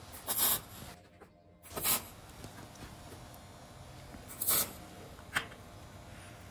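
Steel tube pieces being handled on a steel welding table: three short scrapes and a sharp click near the end.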